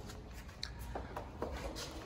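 Low room tone with faint rustling and a few light, short clicks, spread through the pause.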